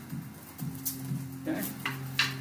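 Quiet room tone with a low steady hum and a few faint, light clicks; a man says "okay" late on.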